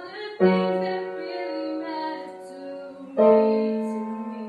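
Grand piano played in slow sustained chords, with two loud chords struck about half a second in and again near three seconds, each left to ring and fade.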